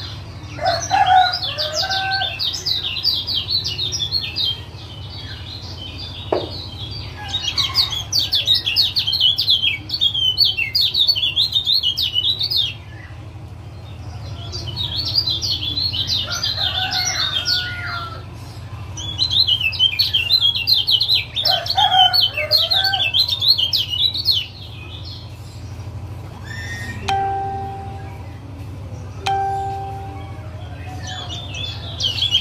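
Kecial kuning (Lombok yellow white-eye) giving rapid, high-pitched 'ciak ciak' chattering calls in four long runs of several seconds each. Near the end come two short, steady lower notes.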